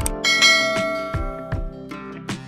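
Notification-bell sound effect: a click, then a bright bell chime that rings and slowly fades, over background music with a steady beat.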